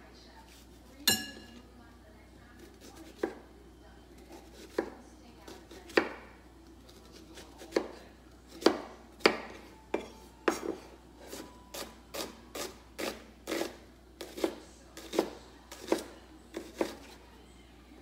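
Chef's knife dicing onions on a wooden cutting board: sharp knocks of the blade on the board, a few spaced-out strokes at first, then quicker, about two a second, through the second half.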